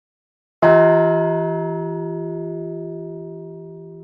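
A single deep bell-like chime struck about half a second in, its tone ringing on and slowly fading.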